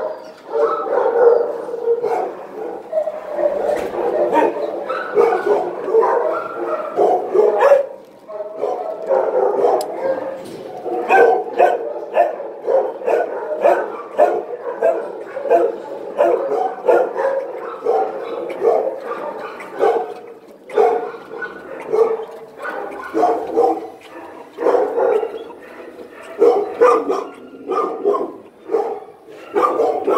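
Shelter dogs barking, a dense, nearly unbroken din of overlapping barks that dips briefly about eight seconds in.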